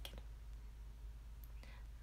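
A short pause in a woman's talk: steady low hum of room tone, with a soft intake of breath near the end.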